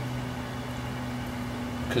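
A steady low electrical or mechanical hum, with a second tone an octave above it, over a faint rumble; a voice begins right at the end.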